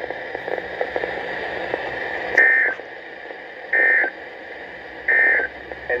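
NOAA Weather Radio broadcast heard through a receiver's speaker: steady radio hiss, then three short, loud buzzing data bursts about 1.3 seconds apart. They are the SAME end-of-message code that closes the weekly test.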